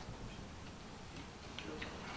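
Faint camera shutter clicks from press photographers, two short clicks near the end, over low room murmur.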